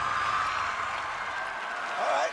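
TV studio audience clapping and cheering, with a low music beat underneath that fades out about three quarters of the way through.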